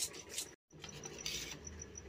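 Faint stirring of a steel spoon through maize flour and water in a steel bowl, with a few light clicks of spoon on bowl; the sound cuts out completely for a moment just after half a second in.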